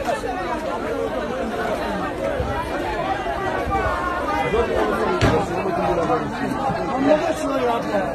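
Crowd of onlookers talking and calling out over one another, many voices at once, with one sharp knock about five seconds in.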